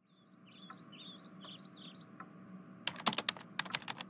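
Faint, quick bird-like chirps over a low steady hum, then from about three seconds in a rapid run of sharp clicks like keyboard typing.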